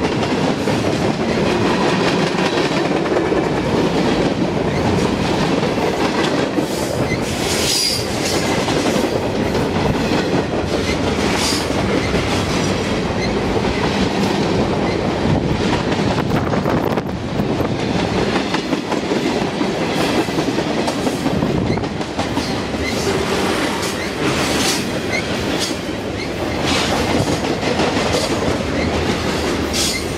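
Freight cars of a mixed freight train rolling past at close range: a steady loud rumble with wheels clattering over the rail joints. A short high wheel squeal comes about eight seconds in, and a few more brief high sounds follow later.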